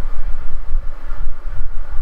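Loud, low rumbling background noise that rises and falls unevenly, with no distinct events.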